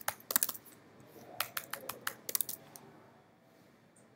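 Typing on a computer keyboard: two short runs of keystrokes in the first three seconds or so, then the keys stop.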